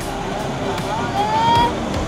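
Swollen, muddy river floodwater rushing past an eroding bank in a steady, loud rush, with people's voices over it and one voice rising near the middle.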